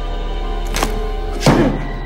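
Film score holding a sustained low chord, with a short knock about 0.8 s in and a louder thud with a ringing tail about 1.5 s in.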